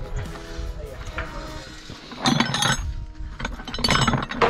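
Steel-pipe corral panels clinking and clanking as they are handled and set in place: a cluster of sharp metallic clinks about two seconds in and another near the end, over steady background music.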